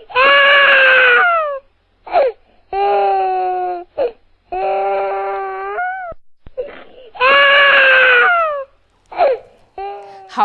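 Crying sound effect dubbed onto the clip: four long, drawn-out wails with short cries between them. The first and last wails slide down in pitch, and the middle two hold level.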